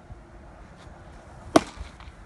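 A baseball popping into a catcher's mitt once, a sharp crack about one and a half seconds in.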